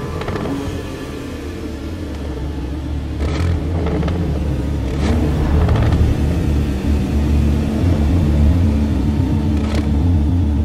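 Deep sports-car engine rumble blended into a dramatic film score, growing louder from about three seconds in, with sweeping whoosh hits at about three and five seconds and again near the end.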